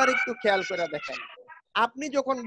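Voices over a video call, overlapped near the start by a single long held call lasting about a second.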